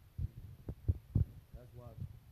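Four dull low thumps in the first second or so, the phone being handled as its screen is scrolled, then a faint murmured voice near the end.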